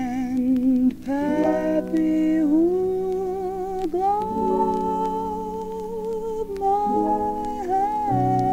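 A female jazz singer holds long, slow notes with vibrato over soft small-band accompaniment, played from a 1957 vinyl LP. A few faint clicks of record-surface noise come through.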